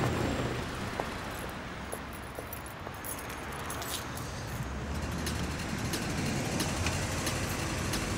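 Street traffic noise of passing cars and trucks, with a car passing close by near the end.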